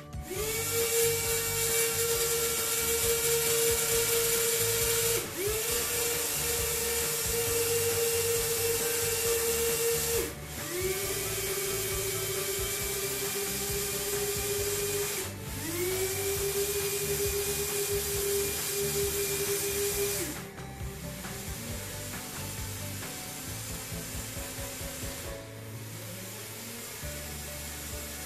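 The four plastic gearbox DC motors of a DFRobot four-wheel-drive robot chassis run together with a steady gear whine. They run in four spells of about five seconds each, each spinning up at its start, as the driver steps them through directions and speeds. The first two spells are higher in pitch than the last two, and the motors stop about twenty seconds in.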